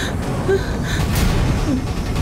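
A woman gasping in fright, with short breathy intakes of breath, over a steady low rumble.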